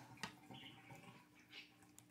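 Near silence: room tone, with one faint short click about a quarter of a second in.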